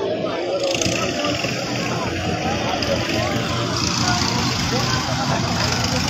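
Backhoe loader's diesel engine running steadily, under the chatter of a crowd.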